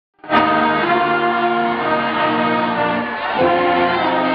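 High school marching band playing a slow alma mater: brass and woodwinds hold long sustained chords that change every second or so, with a brief shift about three seconds in.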